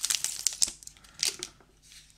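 Cellophane wrapper crinkling as a paintbrush is slid out of it: a run of quick crackles that thins out and fades near the end.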